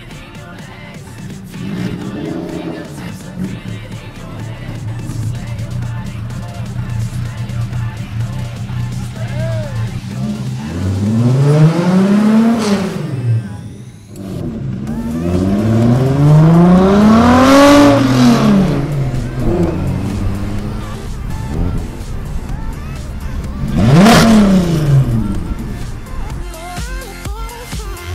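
A 3.6 VR6 six-cylinder engine in a Mk1 VW Citi Golf runs steadily, then revs hard three times. Each pull rises and falls in pitch as the car accelerates away and passes.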